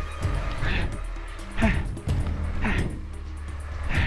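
Suzuki Van Van 125's single-cylinder four-stroke engine chugging at low revs through a muddy rut, its note dipping and picking up again, with background music over it.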